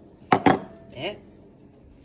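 A bowl set down on a kitchen countertop: two quick knocks close together, a clatter of crockery on the hard surface.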